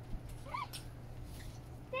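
Low steady background hum, with a faint short vocal sound about half a second in and a person's voice saying "yeah" with a falling pitch right at the end.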